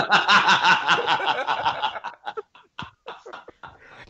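People laughing hard for about two seconds in quick repeated bursts, then trailing off into a few quieter chuckles.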